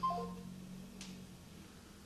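Mobile phone speaker sounding a short three-note tone stepping down in pitch, the signal that a call has ended, over a low steady hum. A single click follows about a second in.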